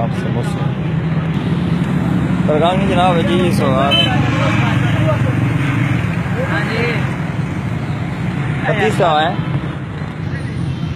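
Street traffic noise: a steady low engine hum from passing motor vehicles, with people's voices in the background, loudest about three seconds in and again near the end.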